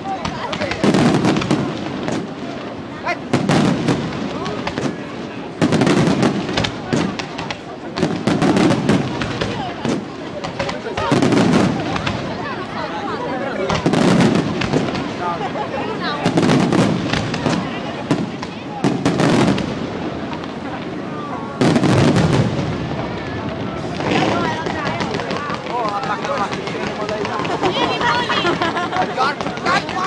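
Aerial fireworks bursting overhead: a loud bang about every two and a half seconds, with smaller reports and crackle between them and a denser run of crackling near the end.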